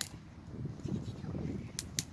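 Small paper-and-twig fire being lit and tended: faint rustling with a few sharp clicks, one at the start and two close together near the end.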